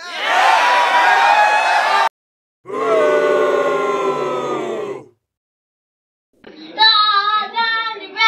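Separate snippets of audio with sudden cuts between them: crowd noise for about two seconds, then a held chord of several notes for about two and a half seconds, then, after a second of silence, a high voice singing.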